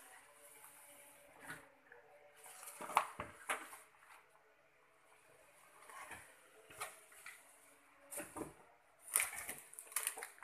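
Soft, scattered knocks and rustles as handfuls of water spinach are dropped from a plastic bowl into an aluminium pot of boiling water, over a faint steady hum.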